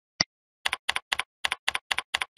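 Typing on a computer keyboard: a single click, then a steady run of keystrokes at about four a second.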